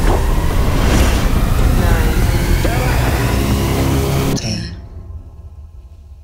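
Loud, harsh trailer sound design: a dense wash of noise over low sustained tones, cutting off suddenly about four and a half seconds in and leaving a faint low hum.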